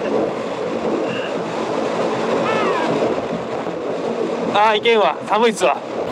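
Honda Rebel 250 motorcycle cruising at highway speed: steady wind rush on the microphone over the drone of the engine. A person's voice breaks in about four and a half seconds in and is the loudest thing near the end.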